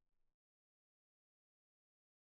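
Silence: the last faint tail of the background music fades out within the first moment, then nothing.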